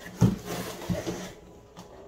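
A large cardboard shipping box being shifted and its flap lifted: a sharp knock a quarter second in, then cardboard and foam packing scraping and rubbing for about a second, with a smaller knock.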